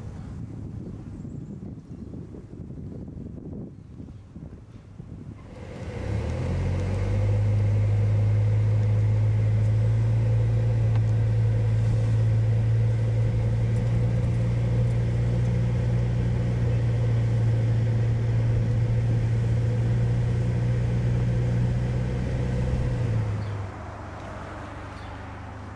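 Steady low drone of a car driving, heard from inside the cabin, starting about six seconds in and cutting off shortly before the end. Before it, a quieter, uneven outdoor background.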